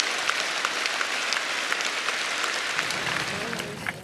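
A large audience applauding, many fine claps blending into a steady wash that thins toward the end.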